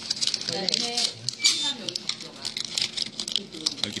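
Foil sweet wrapper crinkling in the hands: a dense run of fine crackles and rustles.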